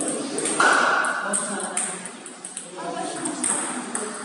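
Table tennis balls clicking off tables and paddles around a playing hall, with a loud voice calling out briefly about half a second in and fainter voices later.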